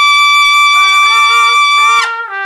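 Two trumpets in an unaccompanied duet: one holds a long, loud high note while the second comes in softly underneath about a third of the way through with a few lower notes. The high note ends right at the close.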